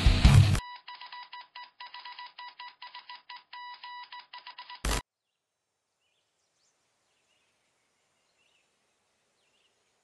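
A burst of heavy-metal music with distorted electric guitar cuts off abruptly. Electronic alarm beeping follows, a high-pitched tone pulsing rapidly on and off for about four seconds. It ends with one short, sharp thump about five seconds in.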